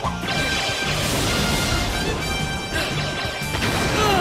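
A crashing blast sound effect, a long noisy burst starting a moment in and a second one near the three-second mark, as the Red Ranger is hit and engulfed in smoke. Action music plays underneath.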